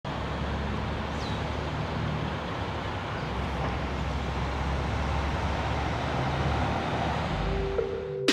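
Steady rumble of road traffic at an outdoor site. A steady musical tone comes in near the end.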